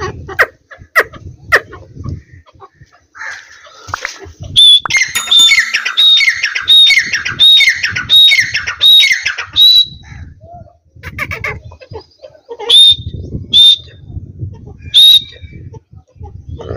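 Francolin (teetar) calling: after a few sharp clicks, a run of about nine loud, piercing calls evenly spaced about half a second apart, then three more single calls near the end.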